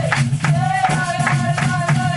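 A live Brazilian samba-style band playing: a voice holds long sung notes over steady pandeiro strokes, about four or five a second, with guitar and a low line beneath.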